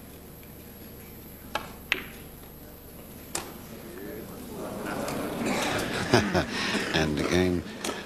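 Snooker balls clicking: three sharp knocks, two close together about a second and a half in and another about two seconds later, as cue and balls strike. From about halfway a murmur of audience voices rises and grows louder.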